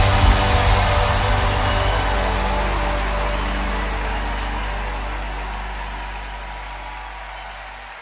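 A live worship band's closing chord ringing out and fading away steadily. A deep held bass note sits under a hissing wash of sound.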